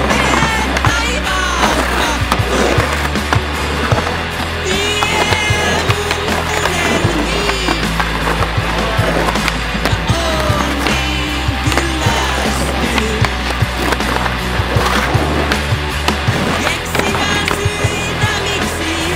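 Soundtrack music with a steady bass line, mixed with skateboard sounds: urethane wheels rolling on concrete and the sharp clacks of the board hitting the ground and a concrete ledge.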